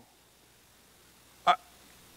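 Near silence with room tone, broken about one and a half seconds in by a single short spoken syllable, "I".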